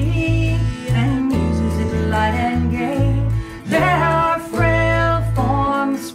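Folk string band playing a slow tune: mountain dulcimer, electric bass, fiddle, lap steel and acoustic guitar, with a steady bass line under sliding melody lines.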